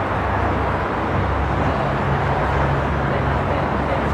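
Steady outdoor traffic and vehicle noise with a low engine hum that comes up about a second in, and indistinct voices in the background.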